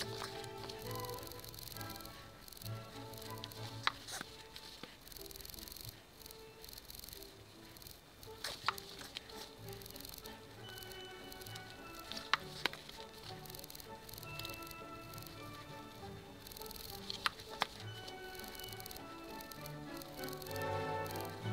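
Background music with held notes, with a few faint sharp clicks now and then.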